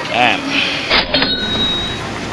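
A man's short 'eh', then after an abrupt cut the steady low rumble of an electric commuter train running, with a thin steady high whine over it.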